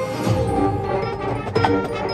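Marching band playing, with brass holding sustained chords over percussion. A sharp percussion hit comes about a second and a half in.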